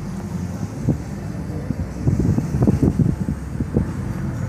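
Low rumble of a car being driven slowly, heard from inside the cabin, with a cluster of short low thumps in the second half.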